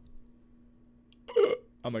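A single short, sharp vocal sound from the man about one and a half seconds in, like a hiccup, in an otherwise quiet pause over a faint steady hum.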